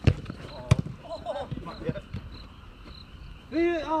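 A football kicked twice on an artificial-turf pitch: two sharp thuds about half a second apart, followed by players shouting.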